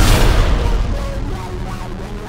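Trailer soundtrack: a heavy impact hit at the very start, its deep boom dying away over about two seconds into quieter music.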